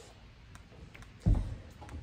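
Quiet room tone broken by a faint click just under a second in, then a single dull, low thump just past a second in that fades quickly.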